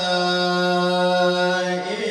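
A man reciting the Quran in melodic tilawah style, holding one long, steady note that breaks off near the end.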